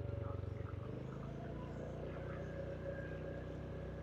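Motorcycle engine running steadily at cruising speed, a faint low hum.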